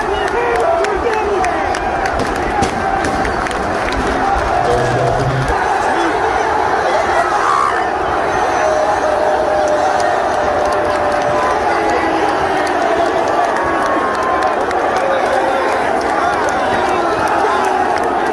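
Football crowd in a stadium stand cheering and shouting together, with hands clapping close by.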